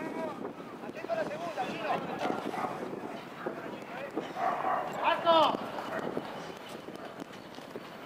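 People's voices calling out at a football match, with one louder shout about five seconds in.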